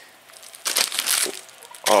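Plastic bag crinkling as it is handled, in one short rustling burst from about half a second in to about a second and a half in.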